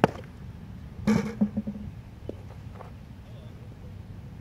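A baseball pitch smacks into the catcher's mitt once, sharply. About a second later a short voice call follows.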